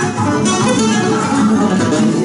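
Flamenco guitar played hard and fast with quick strummed strokes, steady and loud throughout.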